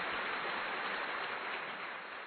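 Steady hiss of even noise, like rain or static, with no tones in it, beginning to fade near the end.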